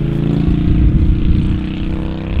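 A group of Harley-Davidson motorcycles riding past, their V-twin engines running steadily.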